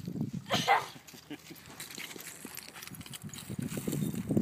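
A dog gives one short, high whine about half a second in, eager while waiting for a stick to be thrown into the water.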